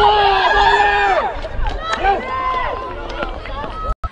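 Several high women's voices shouting and cheering in a goal celebration, over a low rumble. The sound cuts off abruptly just before the end.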